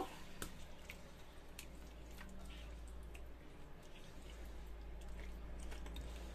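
Marinated chicken pieces being stirred in a wok with a silicone spatula: faint, with scattered light clicks over a low steady hum.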